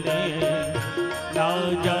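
Hindu devotional bhajan music: a wavering melody over a steady beat, with a voice coming in near the end.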